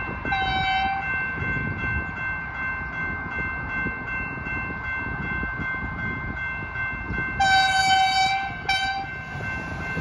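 Level crossing bells ringing steadily with a regular tick, while an approaching V/Line VLocity train sounds its horn: one short blast about half a second in, then a longer blast near the end followed by a quick short one.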